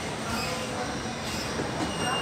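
Steady indoor hubbub with no speech, and faint high squeaks that come and go over it.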